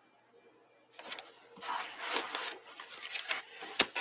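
Sketchbook being shifted and handled on the table: paper and card scraping and rustling in uneven strokes from about a second in, with a sharp knock near the end.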